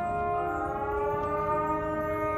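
Marching band holding a sustained chord, with some of its notes sliding slowly upward in pitch from about half a second in.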